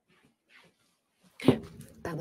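Near silence, then a sudden loud thump about one and a half seconds in, followed by rustling and shuffling, as a person settles back into a desk chair close to the microphone.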